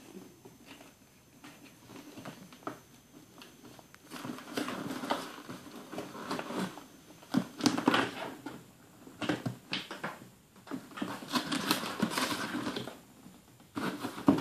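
A cat's paws and claws scratching and scraping on a cardboard beer case, in irregular bursts of small clicks and rustles that start a few seconds in.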